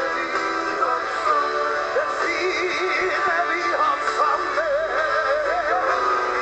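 A live pop-rock band playing with a sung lead vocal. From about two seconds in, the voice holds long notes with a wide vibrato.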